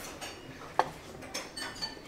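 Chopsticks and dishes clinking lightly, with one sharp click a little under a second in and a couple of softer ticks after it, over faint room noise.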